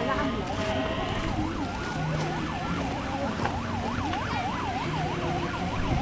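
Emergency vehicle siren that switches from a slow wail to a fast yelp about half a second in, rising and falling about three times a second.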